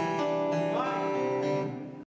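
Acoustic guitars strumming, the chords left ringing; the sound fades away near the end.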